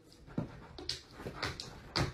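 A dog making a few short sounds in quick succession, roughly half a second apart, as it pushes its head under a sofa cushion.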